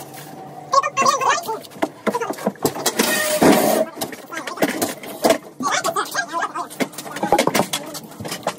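Knocks, rattles and clatter of a hand truck being wheeled with a heavy appliance across a concrete floor, with a louder noisy stretch lasting under a second about three seconds in. Brief indistinct voices come and go.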